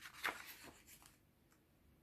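A paper page of a children's magazine being turned by hand: a short rustle about a quarter second in, fading out within the first second.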